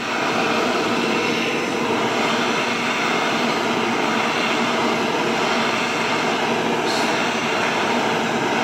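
Gas torch flame burning with a steady rushing hiss as it is swept over pine boards, scorching the wood.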